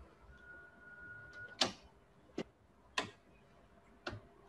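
Three sharp clicks, the second and third under a second apart, over faint room tone. A faint steady high tone sounds for about a second before the first click.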